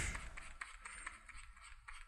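Faint scratching of a pen stylus drawing strokes across a graphics tablet, with a few light clicks.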